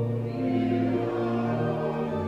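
A church congregation singing a slow hymn together in long, held notes.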